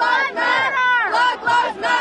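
Crowd of protesters shouting, with loud, strained voices overlapping.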